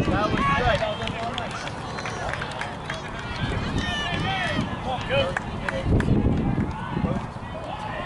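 Several voices from players and spectators calling out and chattering at once, overlapping so that no single voice carries.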